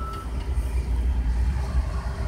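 A van's engine idling with its engine cover off, a steady low rumble, running again after work on a failed fuel injector.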